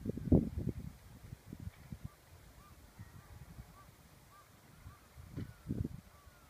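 Wind buffeting the microphone in gusts, loudest just after the start and again near the end. Behind it come faint short bird calls, repeated every half second or so.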